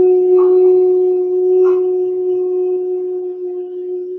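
A woman humming one long, steady note through closed lips, with two faint clicks about half a second and a second and a half in.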